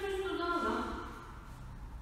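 A woman's voice briefly for about the first second, then a steady low hum of room noise.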